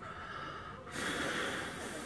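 A person breathing out heavily through the nose, a long hissy breath starting about a second in.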